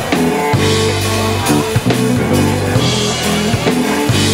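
Live blues band playing an instrumental passage: electric guitar, electric bass and drum kit, with the bass holding sustained low notes under regular drum strokes.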